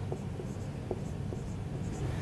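Marker pen writing on a whiteboard: faint, short squeaks and taps as the strokes are drawn.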